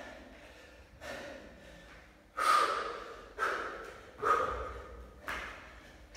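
A man breathing hard in sharp, forceful breaths, about one a second, from the exertion of a long set of jumping burpees. The second breath is the loudest.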